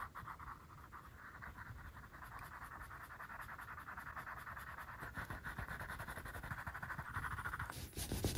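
Wooden edge slicker rubbed rapidly back and forth along the edge of waxy dark-brown leather, burnishing it: a steady, fast rasping friction that builds slightly and stops abruptly just before the end.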